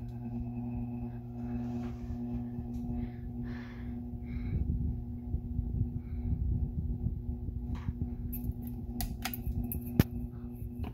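Hampton Bay Littleton ceiling fan running, its motor giving a steady hum over a low rush of moving air. A few short clicks come near the end.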